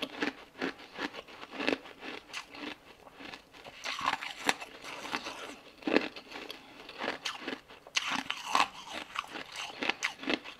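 Close-up biting and crunching of frozen pink ice balls in the mouth: irregular sharp cracks and crunches as the ice is bitten and chewed.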